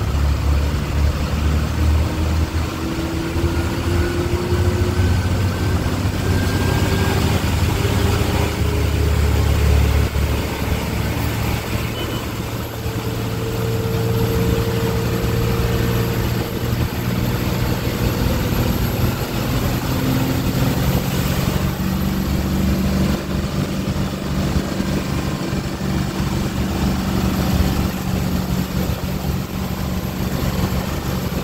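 Diesel bus engine running under way, with a steady low drone that slowly rises in pitch through the first half. Wind and road noise come in through the open window.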